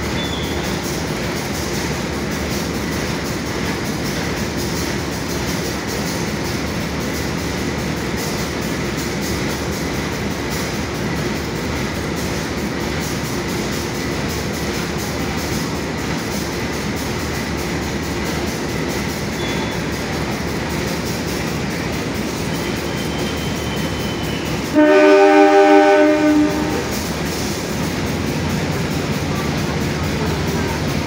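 Diesel passenger train standing at a platform, its engine running in a steady rumble. About 25 seconds in, the locomotive horn sounds once, loud, for about two seconds: the departure signal.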